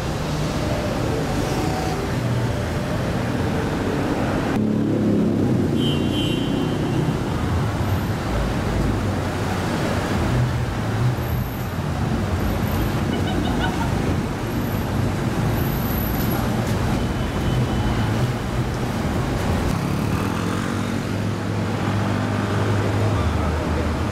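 Steady city street traffic noise, with car engines running and passing, and voices of people in the street mixed in. The sound changes abruptly about five seconds in.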